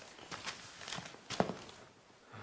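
A man's footsteps as he gets up from a sofa and walks off, a few separate steps with the loudest about a second and a half in.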